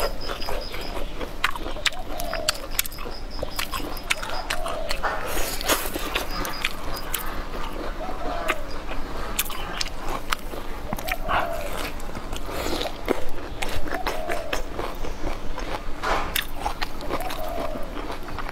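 Close-miked eating sounds of a person chewing a charred whole green chili pepper and rice noodles: wet bites and many sharp mouth clicks, with a short hum from her every few seconds.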